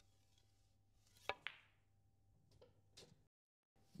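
Snooker balls in a soft stun shot: a sharp click of the cue tip on the cue ball about a second in, followed closely by a softer knock, then two faint clicks near the end.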